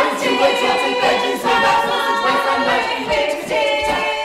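A group of voices singing in harmony, holding long notes that move to a new chord every second or two.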